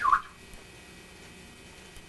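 A brief high-pitched squeal from a person's voice right at the start, then a lull with only faint room tone and a thin steady hiss and whine from the old VHS tape.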